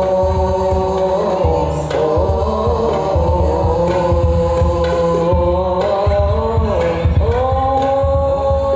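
Hadroh ensemble: male voices singing a sholawat through a PA in long, held notes over rebana frame drums beating a steady rhythm.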